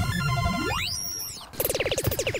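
Synthesized comedy sound effect: a pitch sweep that drops to a low note and climbs back up over a held synth chord, then a fast rattle of short electronic pulses from about a second and a half in.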